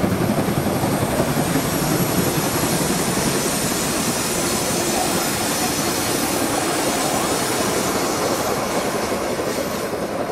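Passenger coaches of a steam-hauled train rolling past on a curve: steady rumble and clatter of wheels on rail, with a faint thin high squeal from the wheels on the curve. The noise dies away near the end as the last coach passes.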